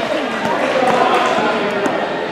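People talking in an echoing school gymnasium, with a basketball bouncing on the hardwood floor.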